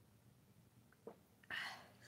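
A person's short, breathy, whisper-like exhale about one and a half seconds in, just after a sip from a mug, preceded by a faint click; otherwise near silence.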